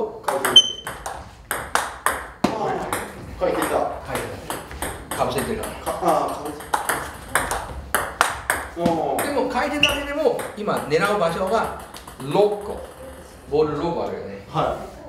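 Table tennis ball being played back and forth: a run of sharp clicks as the celluloid ball strikes the rubber of the bats and bounces on the table, in forehand topspin drives with tacky rubber against backspin. Voices talk over the play.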